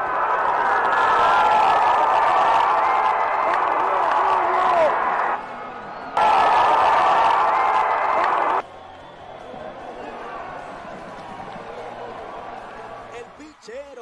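Baseball stadium crowd cheering and shouting, loud for about eight seconds with a brief dip about five seconds in. It then cuts off suddenly to a much quieter background.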